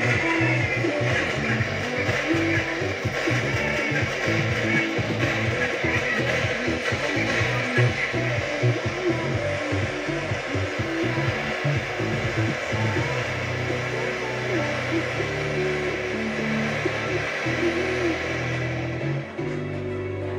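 Music playing from an FM radio station, with a rattling mechanical whir mixed in, strongest in the first half; held bass notes come in from about two-thirds of the way through.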